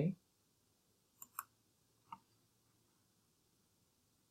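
Computer mouse clicks: a quick pair about a second and a quarter in, then a single click about two seconds in.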